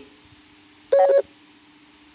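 A single short, loud beep-like tone lasting about a third of a second, about a second in, over a faint steady hum.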